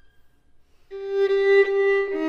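Solo violin: after a short silence, a bowed note starts about a second in and is held.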